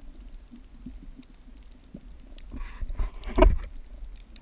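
Underwater sound from a GoPro in its housing on a reef: a steady low rumble with faint scattered ticks, the ticking of reef life. From about two and a half seconds in, a louder rush of moving water and camera-mount handling noise builds, loudest about half a second before the end.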